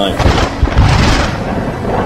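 A loud clap of thunder, with a deep rolling rumble that swells about half a second in and then fades.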